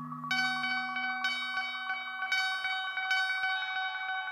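Eurorack modular synthesizer in a two-voice generative ambient patch soaked in delay: a bright, bell-like note with many overtones enters about a third of a second in and repeats about once a second, over a held lower tone that fades away.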